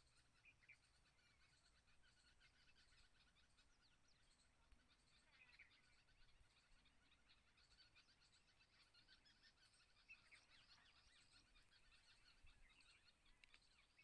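Near silence, with faint short high chirps scattered through it in the background.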